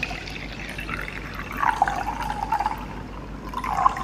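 Water poured from a plastic jug into a plastic measuring cup: a steady splashing trickle that grows louder about one and a half seconds in and again near the end.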